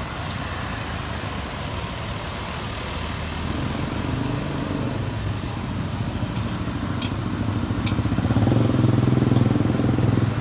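Street traffic: motor vehicles and scooters running past with a steady engine rumble. It grows louder from a few seconds in and is loudest near the end as a vehicle passes close.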